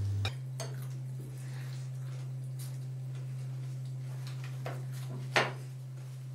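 Sparse clinks and taps of hands and bread against plates and bowls while eating, with one louder clink about five seconds in, over a steady low hum.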